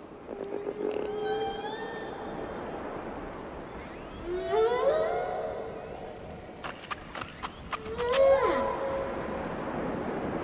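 Underwater recording of whale calls: drawn-out cries that glide up and down in pitch, with a quick run of clicks about seven seconds in, over a steady wash of ocean noise.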